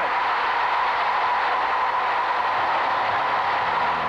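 A packed stadium crowd cheering loudly and steadily, reacting to a game-winning field goal that has just gone through the uprights.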